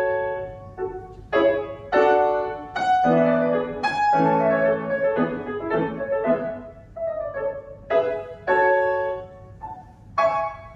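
Solo grand piano played live in a classical rondo: separate chords struck and left to ring and fade, with a fuller, lower-pitched passage in the middle.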